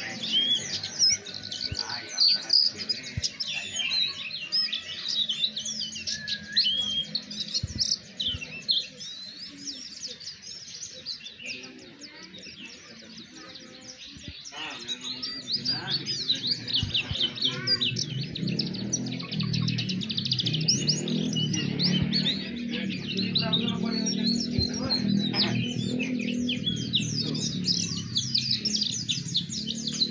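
White-eye (pleci) song: a continuous, rapid stream of high twittering chirps. A low steady hum comes in underneath about halfway through.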